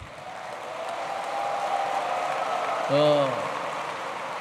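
Audience applauding, swelling over the first second and fading slowly toward the end.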